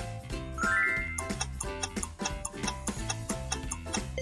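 Background music with a steady bass beat under an evenly paced clock-like ticking: a quiz countdown timer. A short rising tone sounds about half a second to a second in.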